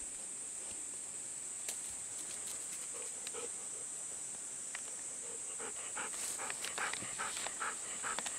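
Golden retriever panting in quick, even breaths, about three a second, starting a little past halfway, over a steady high insect drone.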